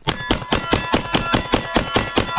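A Springfield Prodigy 9mm pistol fired in a rapid string, about four shots a second, with steel targets ringing from the hits.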